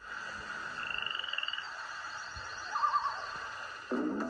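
Marsh sound effects of frogs croaking and trilling over a steady hiss: a short, rapid high trill about a second in, then a lower warbling croak near three seconds. They are played from an old VHS tape and heard through computer speakers.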